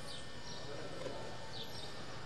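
Open-air background noise with faint distant voices and short, high, downward chirps recurring several times.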